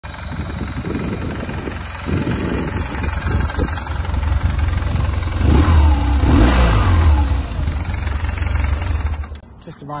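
2008 BMW R1200GS's boxer-twin engine idling with a deep, steady rumble, revved up and back down around the middle. The engine sound cuts off near the end.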